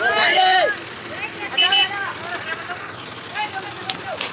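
Men shouting and talking over the steady running of a Mahindra 475 DI tractor's diesel engine.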